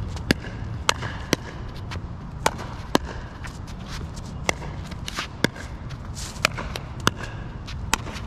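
Pickleball rally: about ten sharp pops of paddles striking a plastic pickleball back and forth, unevenly spaced, over a steady low rumble.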